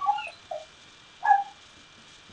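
A woman's voice making brief high squeaky calls for a parrot hand puppet flown in on her hand: two short squeaks, about half a second and about 1.3 seconds in.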